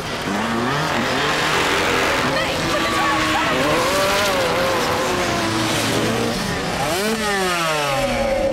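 Dirt bike engines revving hard, their pitch climbing and dropping with the throttle. Near the end a sharp rise is followed by a quick falling sweep.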